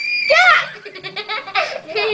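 A young girl laughing hard, in a few bursts with a quick run of short laugh pulses in the middle.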